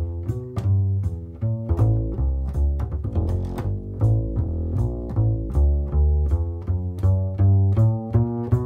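New Standard LaScala hybrid double bass played pizzicato, a solo jazz line of plucked notes at about three a second. It is heard through one microphone on the bass and one on the amplifier fed by a Sansamp Para Driver DI preamp.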